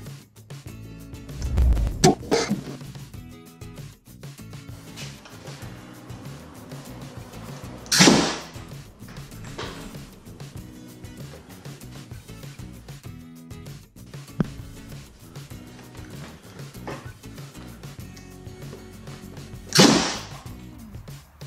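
A homemade PVC air cannon fires three sharp blasts of compressed air, about two seconds in, about eight seconds in and at the very end, over background music. Each blast comes as the modified sprinkler valve is vented by the blow gun and dumps the chamber's air through the barrel in one hit. The shots are test firings at rising pressures of about 40 and 60 PSI.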